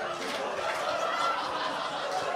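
Comedy-club audience laughing steadily after a stand-up joke's punchline.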